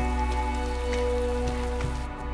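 Steady patter of falling icy snow on a jacket and rocky ground, with a few faint ticks. Underneath are the sustained held tones of a music drone.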